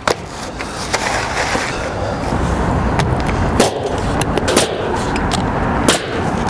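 Pneumatic coil roofing nailer driving nails through asphalt shingles: about half a dozen sharp shots at irregular intervals over a steady rushing noise.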